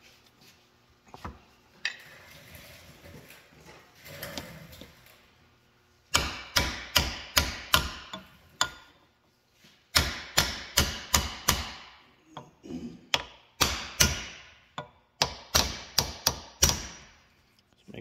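Hammer tapping a seal driver to drive a new wiper seal into the bore of a John Deere 8650 three-point hitch lift assist cylinder: three runs of rapid sharp taps, about three or four a second, starting about six seconds in.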